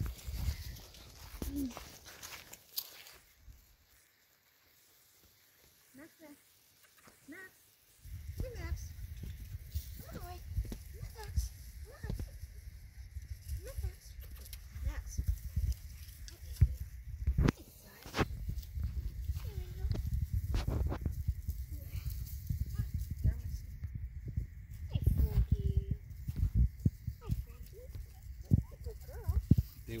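Bull Terrier puppies playing, with short whines and yips. The first several seconds are nearly quiet; from about eight seconds in a low rumble on the microphone runs under the puppy sounds.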